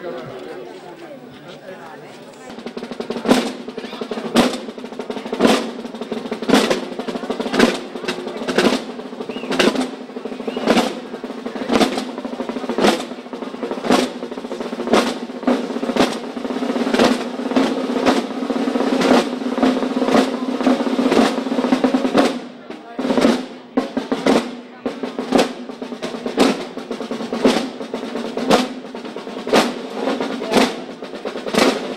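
Procession drums played together in a continuous roll, with a loud accented beat about once a second. The drumming starts up strongly a few seconds in and drops off briefly a little past two-thirds through before resuming.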